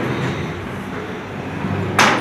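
PVC sliding wardrobe door rolling along its track with a steady rumble, ending in a sharp knock at the very end as it meets its stop.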